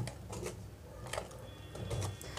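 Wire whisk beating thick cake batter in a stainless steel bowl, with a few faint, irregular clicks of the wires against the bowl.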